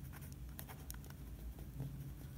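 A Linc pen writing a word on paper: a run of faint, quick scratches and taps of the nib against the sheet.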